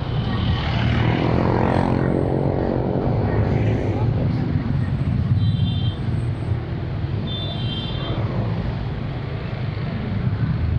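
Motorcycle engine running in slow city traffic, with a steady low rumble. A pitched engine note swells and fades over the first few seconds. Two short high-pitched beeps come around the middle.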